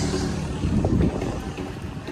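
Wind rumbling on the microphone over outdoor street noise, fading slightly, with a brief rising and falling sound about a second in.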